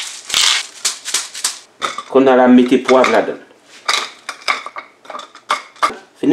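A hand-twisted disposable spice grinder bottle cracking seasoning, a quick run of dry crunching clicks for about two seconds, with a few more scattered clicks later on.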